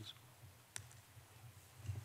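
Faint room tone with a steady low hum, broken by a single sharp click about three-quarters of a second in and a softer knock near the end.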